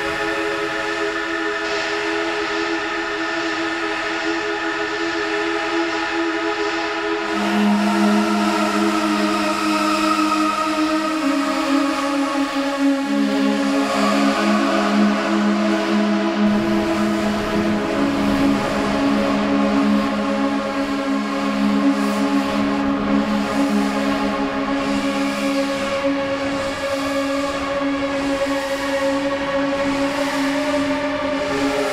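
Novation Summit polyphonic synthesizer playing sustained pad chords that change slowly: new chords come in about a quarter and about halfway through. A fuller, lower layer joins just past the middle.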